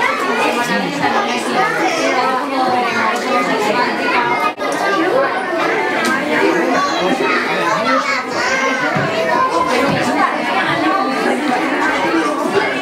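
Many voices of young children and adults talking over one another in a crowded room, with no single speaker standing out. The sound drops out briefly about four and a half seconds in.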